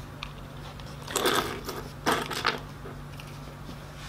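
Handling noise: metal purse-lock hardware picked up and moved on a wooden table while a retractable measuring tape is drawn out. There is a short scraping rustle about a second in and a few small clicks about two seconds in, over a steady low hum.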